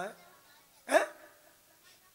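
A man's voice: one short, emphatic spoken syllable about a second in, between pauses, with low room tone around it.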